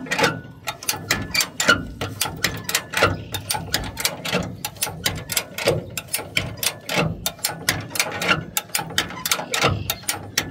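Original-style ratchet bumper jack being pumped by its handle to lift a 1960 Ford Galaxie Starliner by its rear bumper. The jack's pawls click against the notched post in a steady, uneven run of metallic clicks, several a second.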